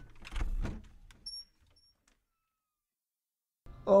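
A rap track ends with a brief low sound in the first second. Two faint, short, high beeps follow, then about two seconds of dead air, total silence.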